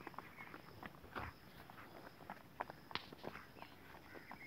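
Faint, irregular footsteps on a dirt footpath, a scatter of soft scuffs and taps.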